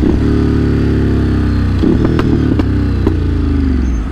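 Ducati Monster 937's Testastretta V-twin slowing off the throttle, its engine note falling as the speed drops, with a brief break in the note about halfway through and a few sharp ticks after it.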